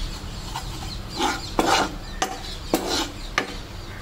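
Steel spoon scraping and stirring flour into melted butter in a nonstick pan, in a run of short strokes about a second in and onward.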